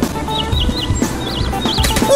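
Upbeat cartoon background music with short, high, warbling chirps repeated over it several times, like cartoon bird calls.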